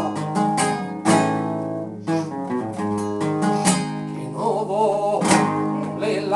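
Spanish guitar played flamenco-style, with sharp strummed chords ringing on between strokes.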